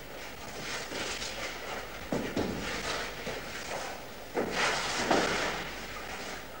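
Scraping and shuffling of a caver crawling on his stomach over a gritty rock floor in a low bedding plane, in irregular rough bursts, the loudest about two seconds in and again just past the middle.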